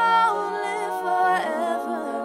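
Women's a cappella group singing: the soloist holds a high note at the start over sustained backing chords, and the harmony shifts about one and a half seconds in.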